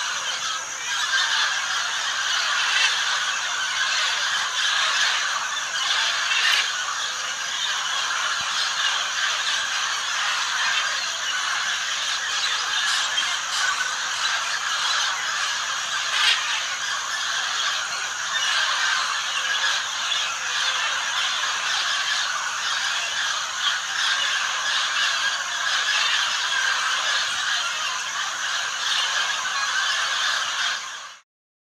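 A flock of parrots and macaws calling over one another, a dense, unbroken chatter of screeches and squawks, with a thin steady high whine underneath.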